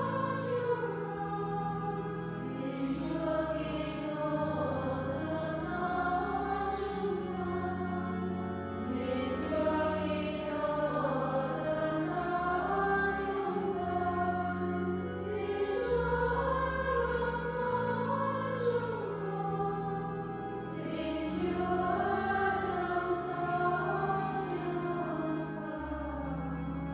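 A congregation of voices singing a slow hymn together, accompanied by long held bass notes that change every couple of seconds.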